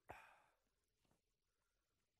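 A short exhaled breath, like a sigh, right at the start, fading away over about half a second; otherwise near silence with faint room tone.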